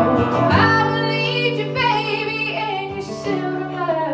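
A woman singing a sustained, sliding vocal line with no clear words, accompanied by her own strummed acoustic guitar.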